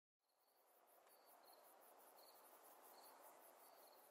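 Near silence, with faint crickets chirping in an even, repeated rhythm: quiet night ambience.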